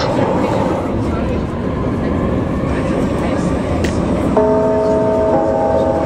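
Underground train running, heard inside the passenger car: a steady rumble and rail noise. About four seconds in, a cluster of steady, even tones joins it for about two seconds.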